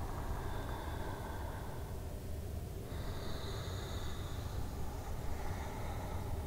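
A person breathing audibly in slow, deep breaths, with two soft breaths, the second starting about three seconds in, over a steady low hum of room tone.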